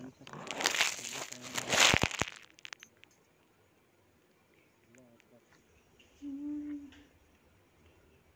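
Dry, crumbly red soil rubbed and broken between the hands, a rough rustling and crackling noise for about two seconds that then dies away to faint scattered ticks. About six seconds in, a short hummed 'hmm' from a man's voice.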